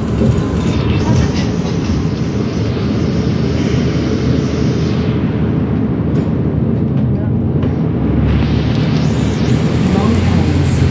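Steady engine and road rumble heard from inside a moving bus's passenger cabin.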